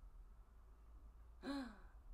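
Near silence with a faint steady hum, then about one and a half seconds in a short voiced 'hm'-like sound from a person, rising then falling in pitch.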